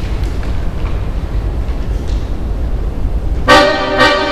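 A low, noisy rumble with faint clicks, then about three and a half seconds in a Paolo Soprani chromatic button accordion comes in with a sudden, loud sustained chord of many notes.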